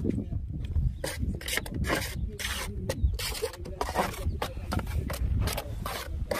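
Mason's trowel scraping and scooping wet mortar in a metal wheelbarrow and on brickwork: irregular rasping strokes over a steady low rumble.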